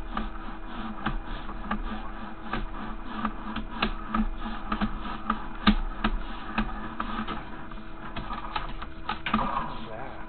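Sewer inspection camera push cable being fed down the line, with irregular clicking and knocking, a few clicks a second, over a steady hum.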